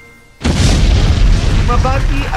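Sudden loud boom sound effect about half a second in, after a fade to near quiet, carrying on as a steady noisy wash with heavy bass.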